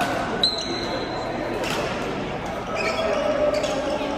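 Badminton rally in a large echoing hall: sharp racket strikes on the shuttlecock roughly once a second, with a high shoe squeak on the court floor after the first strike. Voices chatter in the background throughout.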